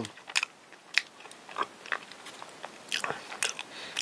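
Close-miked mouth sounds of a person chewing soft, sticky rice-cake bread filled with injeolmi cream: scattered small clicks, with a few louder ones about a second in and near the end.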